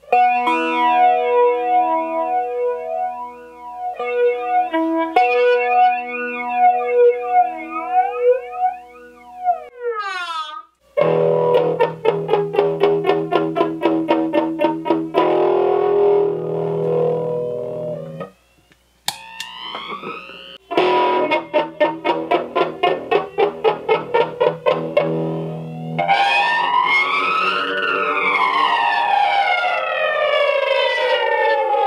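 Electric guitar played through a Strich Twister analog flanger pedal and a small Orange amp: held chords and notes with the flanger's sweep gliding up and down through them, the sweep strongest near the end. The playing pauses briefly twice.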